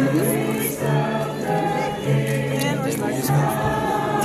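Choir singing, voices held on long notes over a steady, slowly changing low line.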